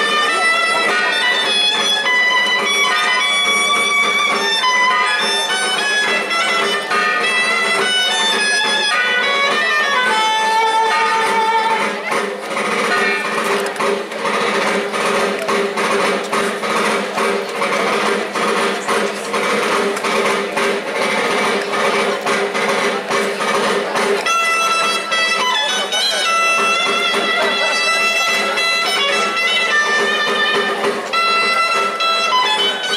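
Traditional folk dance music: a reed melody played over a steady drone. About twelve seconds in the melody drops out and a fast, even clicking rhythm carries on over the drone for about twelve seconds before the melody returns.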